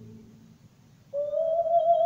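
A soft sustained orchestral chord fades away, and after a brief near-silence a soprano voice enters about a second in on a long, high held note with a wide, even vibrato.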